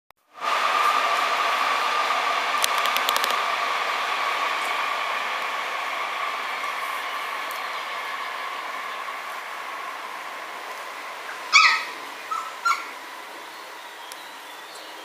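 A steady high tone that fades slowly throughout, with a few quick clicks about three seconds in, then three short, sharp yips from Samoyed puppies near the end.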